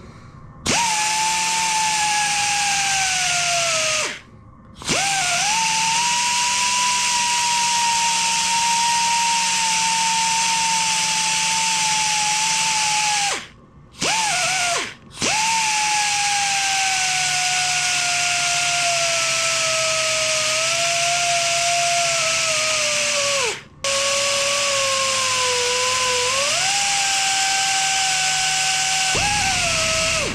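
Power belt file sanding an aluminium motorcycle engine crankcase: a whine with a hiss over it, sagging in pitch as the belt is pressed into the metal and climbing back when eased off. The tool stops and restarts about four seconds in, twice around fourteen seconds and again near twenty-four seconds.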